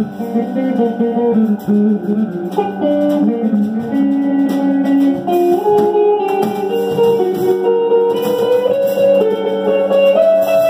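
Live band music: held, sustained notes under a melodic line that moves slowly up and down in steps.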